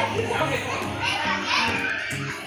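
Children's voices and chatter in a busy indoor play area, over steady background music.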